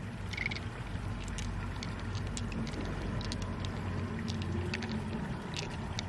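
Pearls clicking lightly against each other and against the open freshwater mussel shell as they are picked out by hand, a scatter of small ticks over a steady low rumble.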